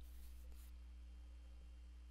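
Near silence: faint room tone with a steady low hum.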